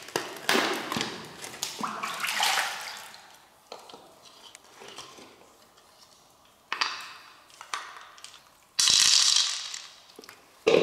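Large freshwater mussel shells being handled: knocks and clatters of shell, and water running and splashing off a mussel as it is rinsed. Near the end a louder rush of hiss lasts about a second.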